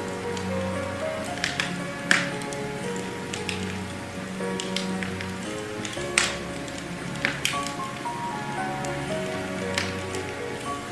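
Instrumental background music: held low notes under a stepping melody, with scattered sharp percussive hits, the loudest about two seconds in and about six seconds in.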